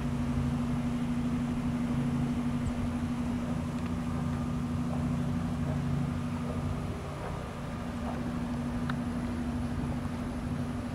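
Steady mechanical hum: an even, unbroken low drone with a constant pitch, like a running motor or compressor.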